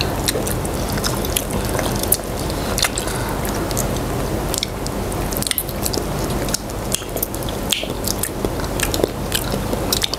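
People eating spicy chicken feet with their hands, chewing and biting the meat off the bones, with many short sharp clicks throughout.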